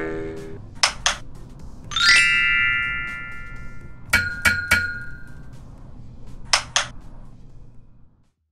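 Electronic outro sting for an animated logo: a few sharp clicks, then a bright ringing chime about two seconds in that fades over a second or so. More clicks with short held tones follow around four seconds in, and a pair of clicks near the end before the sound cuts off.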